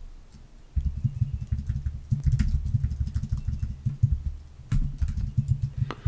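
Typing on a computer keyboard: a quick, uneven run of keystrokes beginning about a second in, each with a dull low thud.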